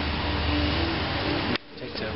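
Steady outdoor street background noise: a low rumble with a faint hum. It cuts off suddenly about one and a half seconds in, leaving a quieter stretch.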